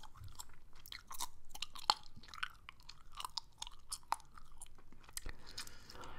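Gum chewed close to a microphone: irregular mouth clicks and smacks, several a second, with no talking.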